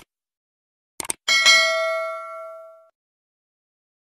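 Subscribe-button animation sound effect: a mouse click, a quick double click about a second in, then a bright bell ding for the notification bell that rings out and fades over about a second and a half.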